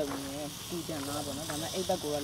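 Meat sizzling on a hot tabletop grill pan over a charcoal stove, a steady hiss under conversation.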